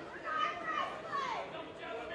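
Boxing spectators shouting over crowd chatter: several high raised voices call out, and one call falls in pitch just after a second in.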